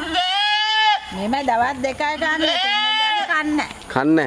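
A goat bleats twice, each call about a second long and rising then falling in pitch.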